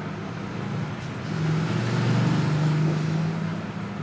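A motor vehicle's engine hum that grows louder about a second in and fades again before the end, as of a vehicle passing by, over a steady low hum.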